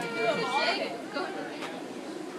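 Overlapping voices of people talking, clearest in the first second and then fainter chatter.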